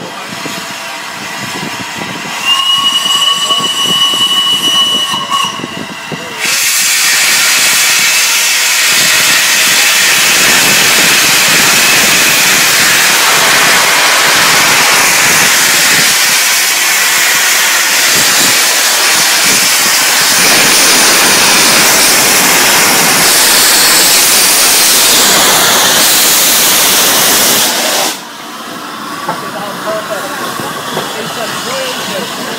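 Steam whistle of the LNER A3 Pacific Flying Scotsman blown for about three and a half seconds on one steady note. Then a loud, steady hiss of steam from the open cylinder drain cocks for about twenty seconds as the locomotive starts away, cutting off shortly before the end.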